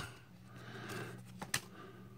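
Quiet handling of trading cards as the front card is slid off the stack to show the next one, with a single sharp card snap about one and a half seconds in, over a faint low hum.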